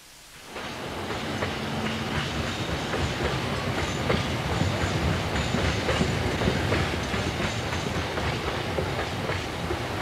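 Steady rumbling, clattering noise with many small irregular clicks, fading in over the first second.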